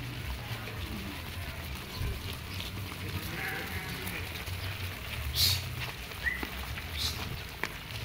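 A flock of sheep and goats bleating, a few short separate calls over a steady low rumble, the loudest about halfway through.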